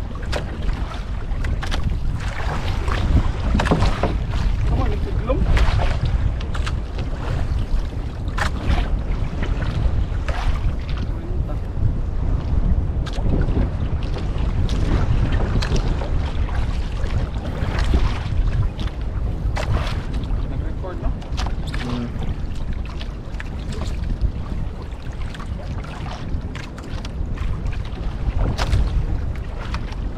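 Wind buffeting the microphone on a small outrigger boat at sea, with a rough low rumble and irregular knocks and splashes of choppy water against the hull.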